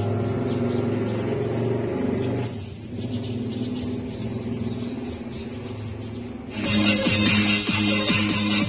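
Music playing: held low notes that thin out and drop in level a few seconds in, then a fuller, brighter section with a beat comes in near the end.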